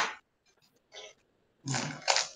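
A person breathing out heavily close to a microphone: a sharp puff right at the start, a faint one about a second in, and a longer, louder one near the end.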